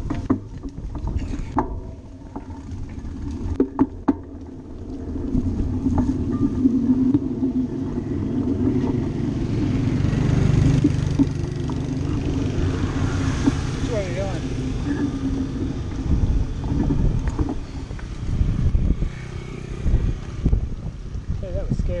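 Small motorbike engine running steadily as it approaches and passes, loudest about halfway through, over wind rumble on the microphone.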